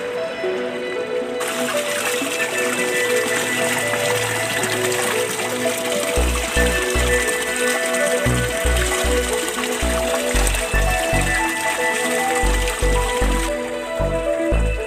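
Water gushing steadily from an aquaponics return pipe into the fish tank, starting about a second and a half in and stopping just before the end, under background music that picks up a low pulsing beat about six seconds in.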